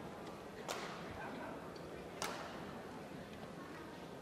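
Low murmur of an indoor badminton hall between rallies, broken by two sharp taps about a second and a half apart.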